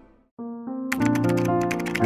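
A music track fades out into a brief silence, and new music with held notes begins about half a second in. From about a second in, rapid typing clicks, about ten a second, play over it: a keyboard sound effect for on-screen text being typed out.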